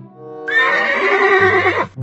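A horse neighing once: a single loud whinny of about a second and a half, starting about half a second in, over background music.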